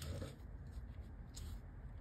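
Knife slicing through a rolled log of puff pastry on baking paper: faint, soft rustling and scraping of the blade through the pastry and against the paper.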